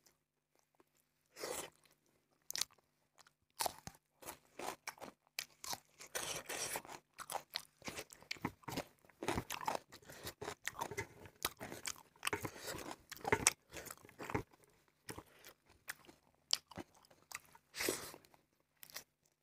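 Close-miked chewing of rice and fatty pork belly curry eaten by hand, with crisp crunches from bites of raw cucumber. A quick string of short chewing clicks and crunches, sparse at first, thickest through the middle, thinning near the end.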